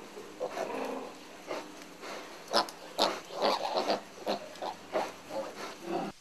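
A sow and her young piglets grunting, many short calls in quick, irregular succession.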